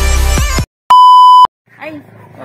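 Electronic intro music with a heavy bass beat stops abruptly. After a short silence, a loud, steady, single-pitched electronic beep sounds for about half a second and cuts off.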